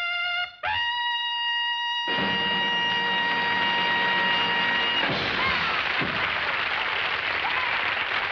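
A trumpet plays a short note, then holds a long, high final note; the rest of the band comes in under it about two seconds in. The piece ends about five seconds in and is followed by audience applause.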